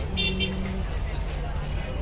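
Busy street ambience: a steady low rumble of traffic with people's voices in the background, and a short sharp high sound near the start.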